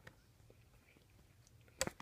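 Quiet room tone, then a couple of sharp clicks close together near the end.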